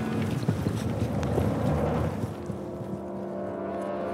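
A rumbling, wind-like whoosh from the soundtrack, over which a held musical drone of steady low tones comes in a little past halfway.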